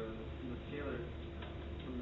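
Brief, indistinct speech from a voice in a lecture room, over a steady low hum, with two short ticks in the second half.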